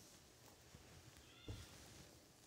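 Near silence: room tone, with a faint click about one and a half seconds in.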